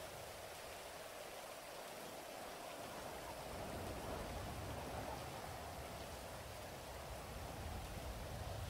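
Faint, steady rain-like background ambience: an even hiss with no distinct events.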